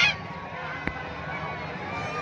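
A brief, loud, honk-like blast right at the start, over a steady background of crowd noise, with a single sharp click a little under a second later.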